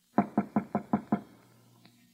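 Knuckles rapping on a door, six quick evenly spaced knocks, about five a second: a radio-drama sound effect of someone knocking to be let in.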